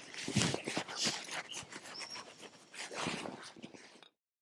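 Faint, irregular rustling and light taps of hands working the moss mix against the stone blocks of a dry stone wall. There is a brief high chirp about two seconds in.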